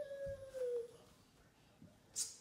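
A toddler's single long, high-pitched vocal 'aah', held steady and then sagging slightly in pitch before it stops about a second in. A soft low thump comes about a quarter second in.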